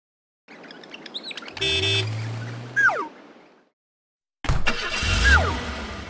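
Cartoon vehicle sound effects in two bursts: an engine-like hum, a short horn honk about a second and a half in, and a falling whistle in each burst.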